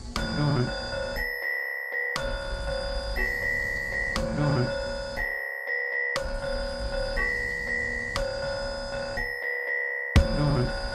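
Experimental electronic music: a looped synthesizer pattern of held tones that restarts about once a second, over a low bass layer that drops out briefly three times.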